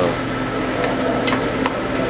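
A 1902 belt-jumping metal shaper, driven by flat belts, running with a steady mechanical hum and a few sharp clicks from its mechanism in the second half.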